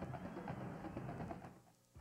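Drum-led music over stadium noise, with many quick percussive strokes. It fades out about a second and a half in, leaving a brief near-silence.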